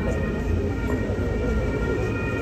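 A low, steady rumble with a high whine of a few steady tones held over it.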